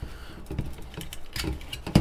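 Small clicks and light scraping of a model rocket fin set, held together with popsicle sticks and small clamps, being worked loose and pulled off the body tube, with a sharper knock at the end.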